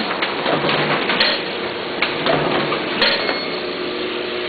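Duplo DBM4000 booklet maker with its stitcher running: a steady mechanical clatter full of quick clicks, with a few sharper knocks about a second, two and three seconds in.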